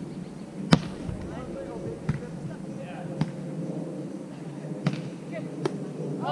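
Volleyball being struck by hand in a beach volleyball rally: one sharp smack of the serve under a second in, then about four lighter hits a second or so apart as the ball is passed, set and attacked. Faint voices in the background.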